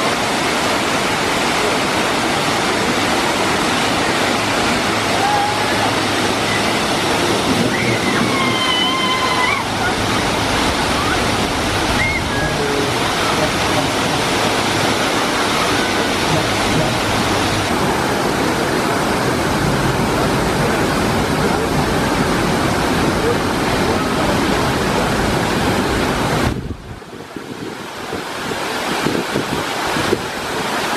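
Water pouring down a tall artificial rock waterfall into a rapids-ride channel: a loud, steady rush of splashing water. Near the end it drops to a quieter churning of the rapids.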